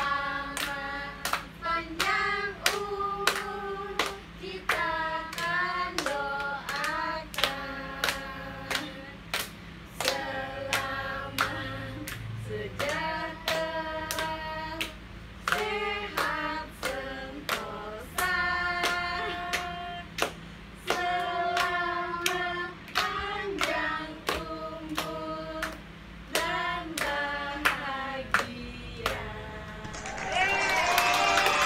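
A family group singing a birthday song together while clapping along in a steady beat.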